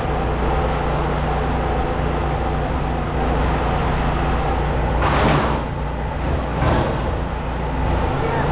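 A steady low mechanical drone, like an engine running. There is a loud burst of noise about five seconds in and a shorter one near seven seconds.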